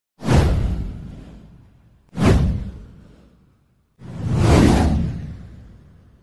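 Three whoosh sound effects for an animated title-card intro. The first two start suddenly about two seconds apart and each fades away. The third swells up and then fades out.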